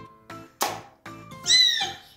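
Background children's music with a plucked beat. About half a second in comes a short rush of noise as a silicone pop-it toy drops into a tub of water, and near the end a child's loud, high, bending squeal.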